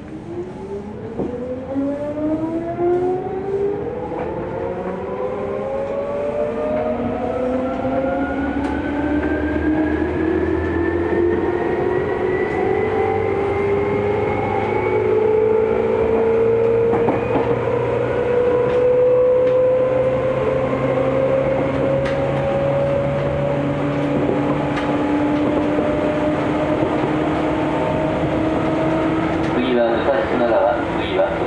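Seibu 2000 series electric train's traction motors whining from inside the carriage as it accelerates away from a station, the whine climbing steadily in pitch for about fifteen seconds and then levelling off at running speed.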